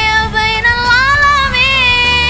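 A girl singing a sholawat, an Arabic devotional song in praise of the Prophet, holding long ornamented notes that bend up and down, over a musical backing track with a steady low bass.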